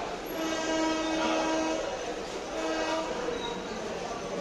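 Train horn blown twice: one long steady blast of about a second and a half, then a short one, over the noise of trains moving through the station.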